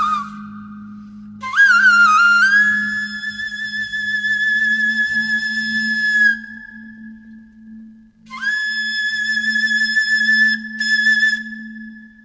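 Bansuri (Indian bamboo flute) playing slow, long-held notes. A note bends up into place, is held for about five seconds and fades, and after a short pause a second long note sounds and holds, all over a steady low drone.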